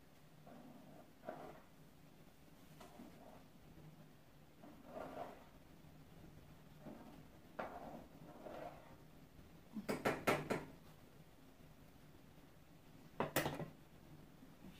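A spoon stirring boiling macaroni in a saucepan, with soft scrapes against the pan, then a quick run of sharp clatters about ten seconds in and one more loud knock near the end.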